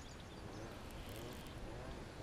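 Faint sound of a baitcasting reel being cranked slowly during a lure retrieve, over a low, even background, with a series of faint short rising tones.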